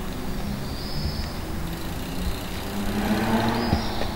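A motor vehicle's engine hum over a low rumble, growing louder about three seconds in, with one short knock near the end.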